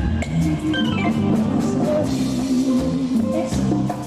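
A Tejano band playing live, with drum kit, organ-toned keyboard and bass guitar. A short descending keyboard run comes about a second in.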